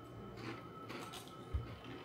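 Faint crunching of spicy rolled corn tortilla chips (Takis) being bitten and chewed, with a few soft crackles and then a single low thump about one and a half seconds in.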